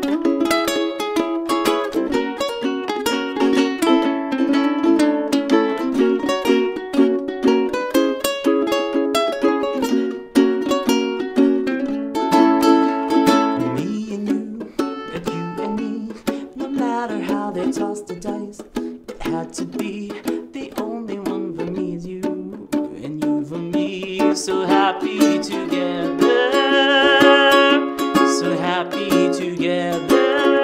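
A solo acoustic ukulele strumming chords in F-sharp. About halfway through it moves into the F#m, E, D, C# verse progression.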